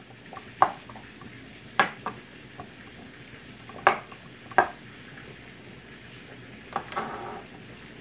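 Kitchen knife chopping sliced mushrooms on a plastic cutting board in a rough chop: about half a dozen sharp knocks of the blade on the board at uneven intervals, over a steady background hiss.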